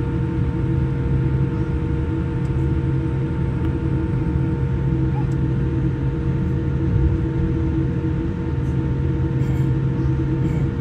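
Steady cabin drone of a jet airliner taxiing, heard from inside the cabin: an even low rumble with several steady hum tones running through it.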